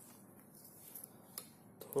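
Quiet room tone with two faint, short clicks a little past the middle, small handling noises as the earphone cable is moved.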